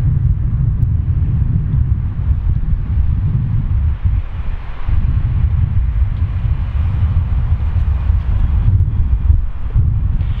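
Wind buffeting the camera microphone: a loud, uneven low rumble with a faint hiss above it.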